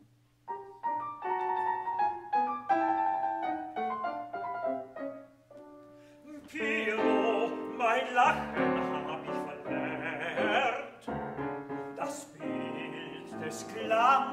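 A grand piano plays the opening bars of an art song (Lied) alone. About six seconds in, a baritone voice comes in singing with vibrato over the piano accompaniment.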